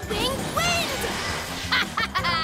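Cartoon soundtrack: background music with short wordless vocal sounds that swoop up and down in pitch.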